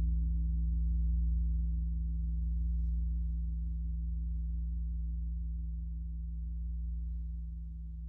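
Paiste 28-inch Bronze Gong No. 8 ringing out and slowly fading: a deep hum of low overtones that swells and wavers gently in loudness as it decays.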